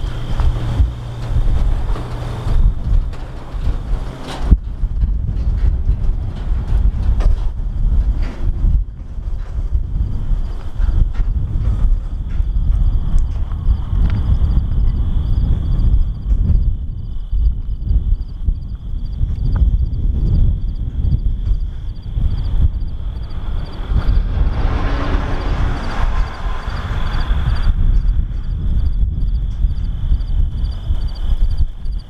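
Wind buffeting the microphone in uneven gusts, with a faint steady high-pitched whine above it and a swell of rushing noise a little before the end.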